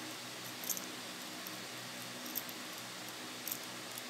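Faint handling sounds as a small keychain screwdriver tightens the blade screws of a hair trimmer: a few light clicks and a brief rattle of the tool's ball chain, over a steady low hum.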